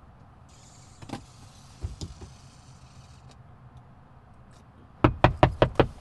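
Low steady hum of a quiet car interior with a few faint clicks, then near the end a fast run of about seven sharp, loud knocks on the car from outside, knuckles rapping on the driver's door or window.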